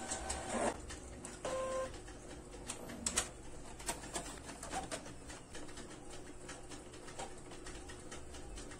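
Brother DCP-T420W ink-tank printer working through a print job. Two short, steady motor tones come near the start, and a run of clicks and light knocks from the paper feed and print-head mechanism continues throughout, the loudest click a little after three seconds in.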